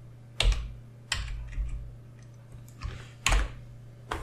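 Three separate clicks of computer input devices as an image is picked and inserted, the last the loudest, over a steady low hum.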